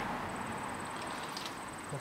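Faint, steady background hiss with no distinct event, fading slightly, and a couple of faint ticks near the end.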